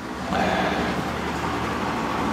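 A steady rushing noise of a passing vehicle, swelling up about a third of a second in and then holding.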